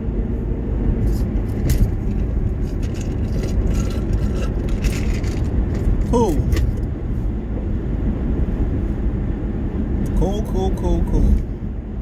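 Steady low rumble of road and engine noise inside a car's cabin. A man's voice breaks in briefly about six seconds in and again near the end.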